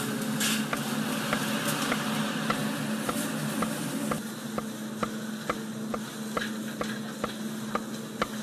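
Large knife slicing raw meat into thin strips on a wooden cutting board, the blade knocking the board with each cut, about twice a second, over a steady low hum.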